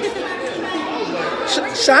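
Indistinct chatter of several voices in a large room. A voice starts speaking clearly near the end.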